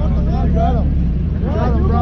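Steady low rumble of a car engine running, with men's voices talking over it.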